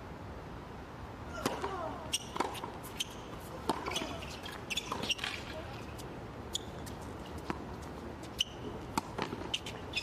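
Tennis ball struck by rackets and bouncing on a hard court during a doubles rally: a string of sharp pops beginning about a second and a half in, the first coming off the serve, irregularly spaced and thinning out near the end.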